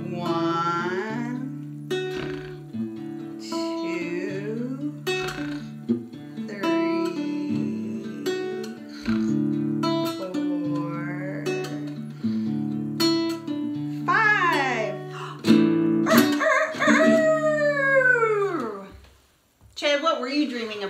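Acoustic guitar played gently, with a voice gliding in pitch over it now and then. Near the end comes a loud, long crowing call that rises and then falls, like a rooster crow, and then a brief hush.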